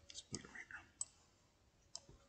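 A few faint, sharp computer mouse clicks, spaced irregularly, about four in two seconds.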